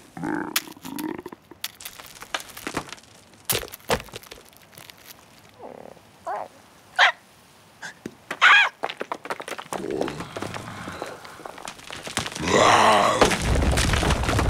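Cartoon slapstick sound effects and character noises: scattered knocks and clicks, three short pitched squawk-like cries in the middle, and a longer, louder vocal sound near the end.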